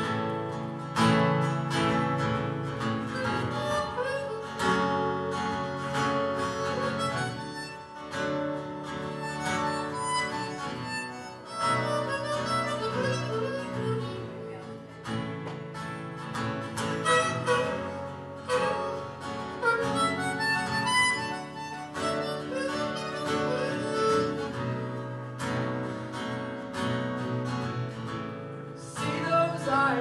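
Harmonica playing a melody over a strummed acoustic guitar, the duet starting suddenly at the outset.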